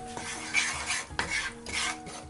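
A wooden spatula scraping and stirring across the bottom of a non-stick frying pan, pushing chili flakes through hot oil in four quick strokes.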